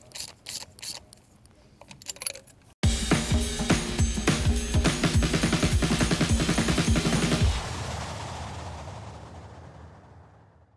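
A hand ratchet clicks at a few clicks a second as it snugs up spark plugs, fading over the first two seconds before cutting off abruptly. Background music with a fast beat then comes in just before three seconds and fades out near the end.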